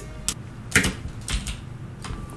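A few short, sharp clicks and taps, the loudest just under a second in: handling noise close to the microphone as earbuds are put in and the mic is touched.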